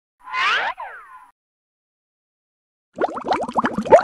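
Cartoon sound effects: a single swooping 'boing' whose pitch rises and then falls, lasting about a second. After a gap comes a rapid run of short rising bloops, about seven a second, like underwater bubbling, starting near the end.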